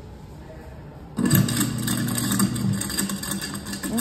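Kitchen sink garbage disposal switched on about a second in: a sudden loud start, then a steady low motor hum with a harsh rattling noise over it.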